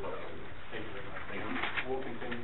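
Indistinct voices of people talking in a meeting room, too muffled to make out words.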